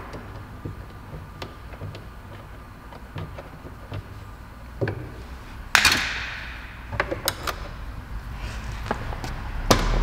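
Small clicks and taps of a screwdriver and hands working the screws and plastic trim of a car door panel, with one louder clatter about six seconds in that rings out briefly.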